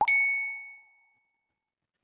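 A single bright ding sound effect, struck once and ringing out, fading away within about a second. It marks the reveal of the correct quiz answer.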